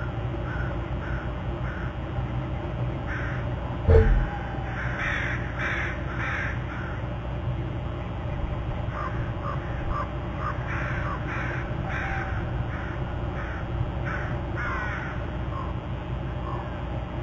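A bird calling in series of short harsh notes, about two a second, louder around five to seven seconds in and again later. A single loud thump comes about four seconds in, over a steady low rumble.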